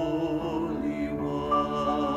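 A woman and a man singing together in a duet, holding long sustained notes.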